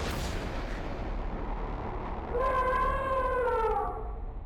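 Logo-intro sound effect: a sudden boom at the start that fades into a steady low rumble. About two and a half seconds in, a held pitched tone joins it and sags in pitch near the end.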